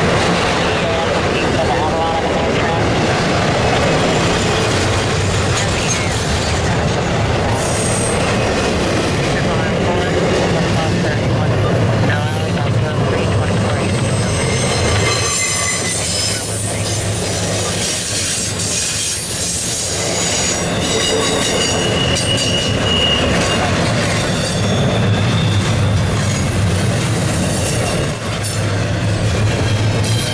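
Freight cars of a CSX intermodal train rolling past: a steady loud rumble of steel wheels on rail, with high-pitched wheel squeals coming and going, loudest a little past the middle and again around three-quarters of the way through.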